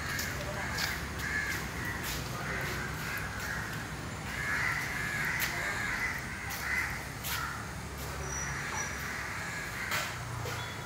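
Birds calling over and over with short, harsh calls, over a steady low rumble, with a few sharp clicks.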